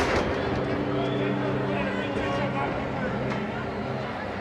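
Wrestling entrance music with long held chords under crowd noise and shouting in the arena. A single sharp bang lands right at the start.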